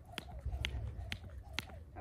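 Jump rope skipping through jumping jacks: a sharp slap about twice a second as the rope strikes the mat and the feet land.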